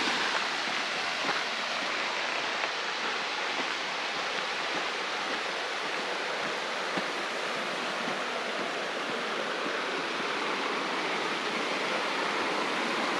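Steady rush of water pouring over a concrete spillway weir and running down its stepped channel.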